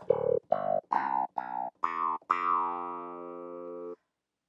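A short clavinet-like sample played from Ableton Live's Simpler at different pitches: about six quick plucked notes, then one held note that cuts off abruptly near the end.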